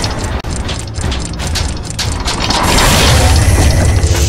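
Animated logo intro sound effects of machinery: a quick run of ratchet-like clicks and gear clatter, then a deep low rumble swelling through the second half.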